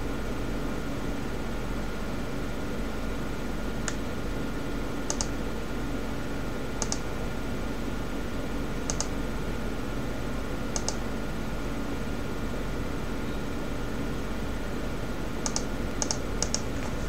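Computer mouse clicking about six times, each click a quick press-and-release tick, over a steady background hum.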